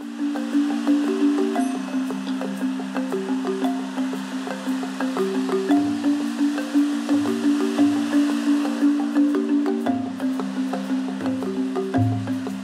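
A band playing a quiet instrumental passage: a repeating pattern of short, low notes, with deeper notes coming in now and then from about halfway, and light percussion ticks over it.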